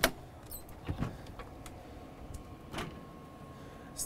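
Motorhome entry door latch clicking open, then the HWH hydraulic triple entry step unfolding: a few soft clunks and, in the second half, a faint steady motor tone.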